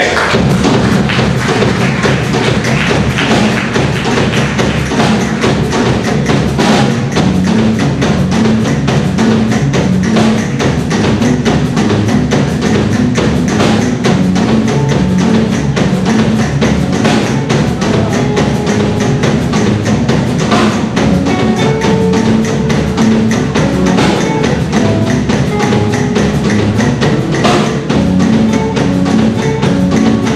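Live band starting a song and playing an instrumental passage: electric guitar, bass guitar and acoustic guitar over a steady beat. The music comes in abruptly and runs on at an even level.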